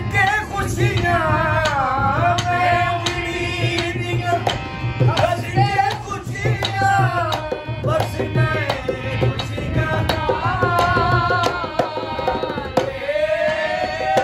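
Saraiki song: a steady drum rhythm under a melody whose pitch bends and wavers.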